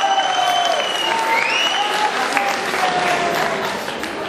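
Audience applauding steadily, with a few pitched calls over the clapping.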